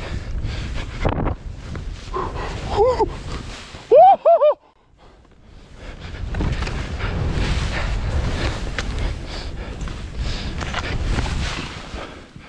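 Wind rushing over the microphone while skiing fast through deep powder, dropping away briefly about five seconds in and then rising again. Two short vocal yelps break through, a small one about three seconds in and a louder one at about four seconds.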